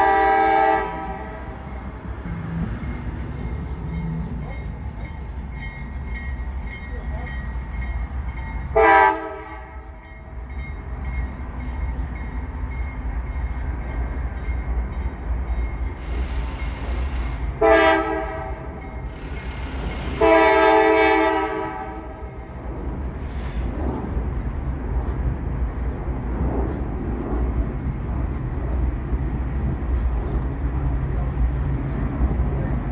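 CSX freight locomotive air horn sounding four blasts as the train approaches: one about a second long at the start, short ones about nine and eighteen seconds in, and a longer one about twenty seconds in. A steady low rumble runs beneath.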